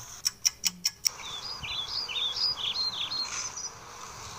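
A quick run of five sharp clicks in the first second, then birds chirping in short repeated calls.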